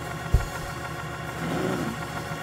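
Church band's organ holding a steady sustained chord under the sermon, with a single low drum hit about a third of a second in.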